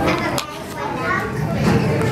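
Children's voices as they play, several talking and chattering at once.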